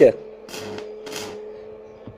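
Stick (manual electrode) arc welding: the arc crackles and hisses in two short bursts over a steady hum, which cuts off about a second and a half in as the arc is broken.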